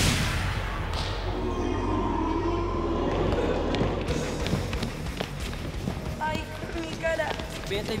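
A sharp hit right at the start that dies away over about a second, then a ball bouncing on a gym floor among children's voices, with a shout near the end.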